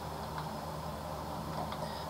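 Room tone: a steady low hum with faint hiss.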